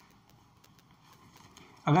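A quiet pause with faint room tone and a few soft ticks, with a man's speaking voice starting near the end.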